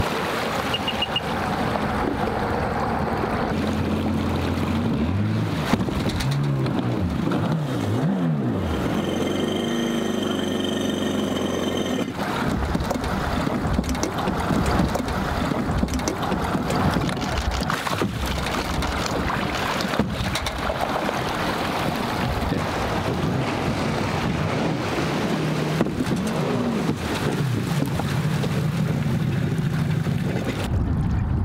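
Personal watercraft (jet ski) engines idling and revving as the craft drive onto and off a floating dock, with water splashing. A few seconds in, the engine pitch rises and falls several times in quick succession.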